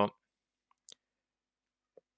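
A word ends just as this starts, then near silence in a small room broken by a faint click or two of a computer mouse about a second in.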